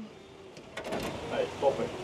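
A talking public rubbish bin playing a recorded voice message from its built-in speaker, with a few sharp clicks just before the voice begins.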